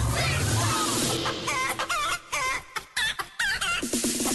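Hen clucking: a quick run of short, bending calls, about four or five a second, starting about a second in, with music underneath at the start.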